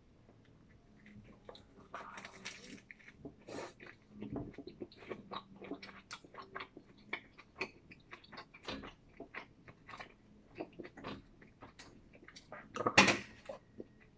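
A person biting into and chewing a sandwich of bread and fresh vegetables, with many small irregular mouth clicks and crunches. A brief, much louder noise comes about a second before the end.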